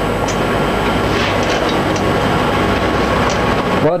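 Steady mechanical clatter from office machines, with computer keyboard typing, cutting off suddenly near the end.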